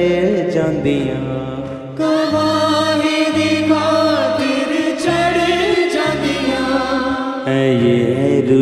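Punjabi worship song music: singing with instrumental accompaniment and a bass line. The music gets fuller and brighter about two seconds in.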